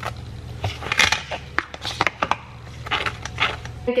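A knife spreading cream cheese across a bagel half: a series of short, uneven scrapes and clicks.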